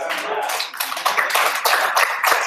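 Audience applauding, a dense patter of many hands clapping, heard over a video-call link.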